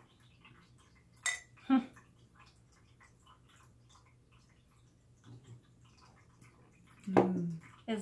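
Two stemless wine glasses clinking once in a toast about a second in, a single short ringing clink, followed by faint sips of wine.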